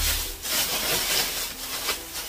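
Clear plastic bag rustling and crinkling as packs of toy slime are pulled out and handled, in uneven surges.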